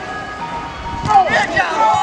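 Players shouting on a five-a-side football pitch, loudest from about a second in, over a steady tone.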